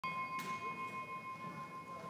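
A hand-held bell rung to open the worship service, sounding one sustained ringing tone with a slight regular waver. There is a light tap about half a second in.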